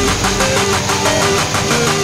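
Background music with a fast, even beat and held melodic notes.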